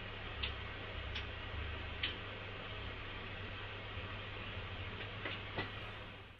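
Front-panel knobs and switches of a Tektronix 545A oscilloscope clicking as they are turned: three sharp clicks in the first two seconds and another near the end, over a low steady hum.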